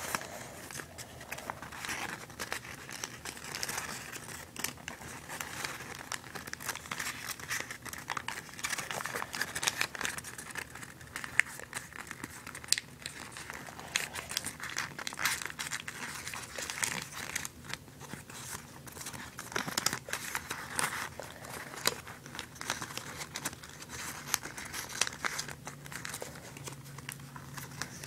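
Origami paper being handled and folded, an irregular run of small crinkles and crackles as paper pieces are bent and slid together.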